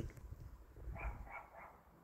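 Faint animal calls, three short ones in quick succession about a second in, over a faint low rumble.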